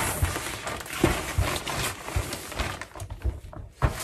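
Paper towel wiping and rustling over the inside of an umbrella canopy, cleaning it with alcohol, with a few soft knocks from handling the umbrella.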